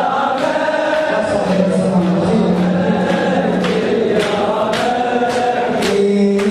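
Many men chanting a Husseini latmiyya lament in unison, holding long sung notes. Rhythmic slaps of hands on bare chests keep time, about one every half second and clearer in the second half.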